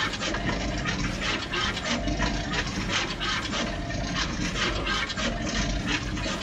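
Juki pick-and-place machine running: a steady rushing hiss with rapid ticking as the placement head moves and places parts, and a short whine that recurs about every second and a half.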